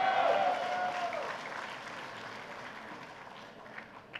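Audience applauding, with a voice calling out over the clapping in the first second. The clapping peaks at the start and then dies away over a few seconds.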